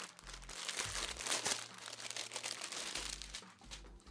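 Clear plastic packaging bag crinkling and rustling in rapid, continuous crackles as gloved hands open it and pull out a cotton towel.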